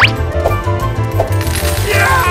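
Coins clinking and jingling as a cartoon sound effect, swelling about one and a half seconds in, over background music with a steady beat.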